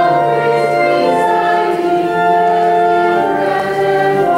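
Church hymn music: held chords that change every second or so, with voices singing.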